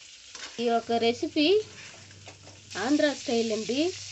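Tomato chunks sizzling in hot oil in a steel kadai as a metal slotted spoon stirs and scrapes them around the pan. There are two spells of pitched scraping, about half a second in and again near the end.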